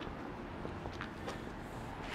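Quiet outdoor background noise: a low steady rumble with a couple of faint clicks about a second in.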